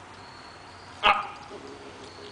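An American bulldog gives a single sharp bark about a second in: a play bark, given from a play bow.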